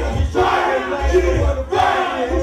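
Men shouting into microphones over a loud hip-hop beat, with crowd noise mixed in.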